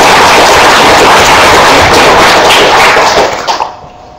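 Audience applauding loudly, a dense run of rapid claps that dies away about three and a half seconds in.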